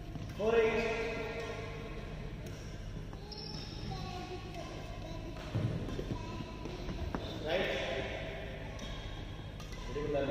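Badminton rally: a couple of sharp racket hits on the shuttlecock, with a voice calling out loudly about half a second in and again near eight seconds.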